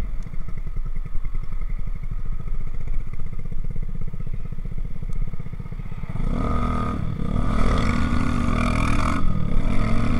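Motorcycle engine running at low revs with a low, pulsing note, then opening up about six seconds in as the bike accelerates, with a brief dip in the sound about nine seconds in.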